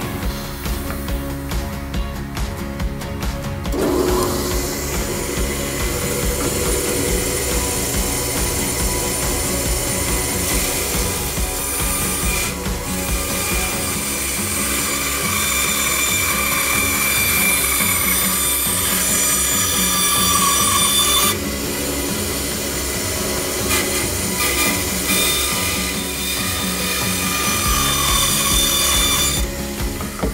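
Bandsaw running and cutting a rounded corner through a piece of wooden butcher-block countertop. The cutting starts about four seconds in and stops shortly before the end.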